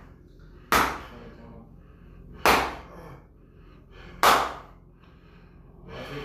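Three sharp slapping strikes of hands on a bare back during a bonesetter's forceful manual treatment, evenly spaced about one and three-quarter seconds apart.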